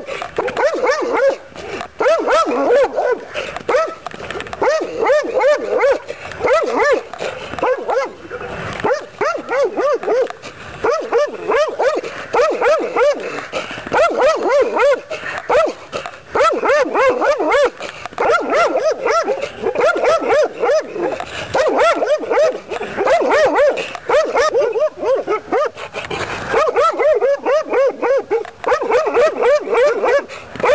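A Central Asian Shepherd Dog barking aggressively in rapid runs of about three or four barks a second, with brief pauses, as it guards at a fence.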